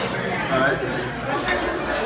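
Many people talking at once, diners' chatter filling a large room, with no single voice standing out.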